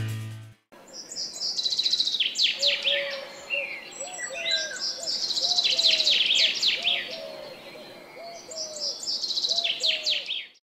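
Birds calling in a forest: bursts of quick, high, downward-sweeping chirps, with a lower short call repeated many times underneath. A music track stops just before the birds start.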